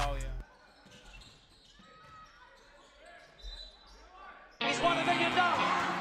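A hip-hop track cuts off, leaving faint game sound from a sports hall with a basketball bouncing. About four and a half seconds in, loud music starts suddenly.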